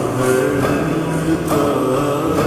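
Slowed-down naat with heavy added reverb: a male voice sings long, drawn-out notes over a sustained vocal drone.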